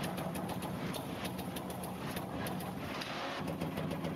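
A machine running steadily, with rapid, closely spaced mechanical strokes in an even rhythm.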